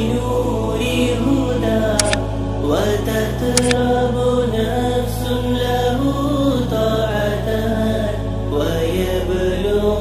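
Arabic nasheed as background music: a drawn-out chanted vocal melody, without clear words here, over a steady low drone that moves to a new pitch every second or two.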